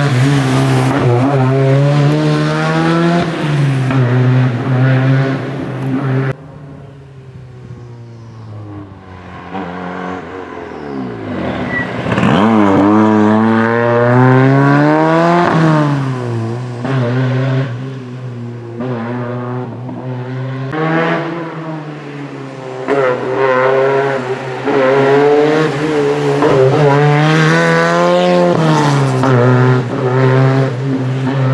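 A Ford Sierra rally car's engine pulling hard up a twisting hill climb, its revs climbing and falling again and again through gear changes and lifts for the bends. The sound drops suddenly about six seconds in. It returns loud, rising in pitch, about twelve seconds in.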